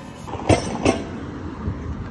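Weight stack plates of a pin-loaded leg-extension machine clanking twice, about half a second apart, with a softer knock after.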